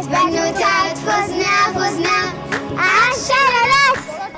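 A child singing a celebratory chant over a music track.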